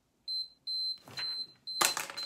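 Timer alarm beeping: a run of short, high-pitched beeps in quick succession, signalling that the one-minute time limit is up. A sharp knock near the end is the loudest sound.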